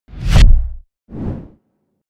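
Two whoosh sound effects of a title-logo intro: the first loud, with a deep low rumble under it, the second shorter and softer about a second in.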